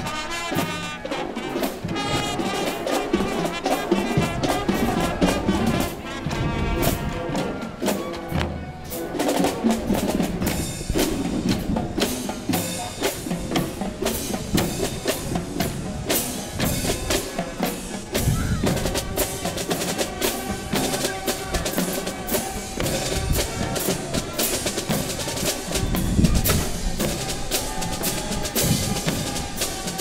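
Marching band playing live: brass and woodwinds over a drumline of snare drums, bass drums and cymbals, with steady rhythmic drum strokes throughout.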